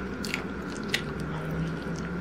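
Close-up mouth sounds of eating cup ramen noodles: quiet chewing with a few short, sharp wet clicks and smacks, the clearest about a second in.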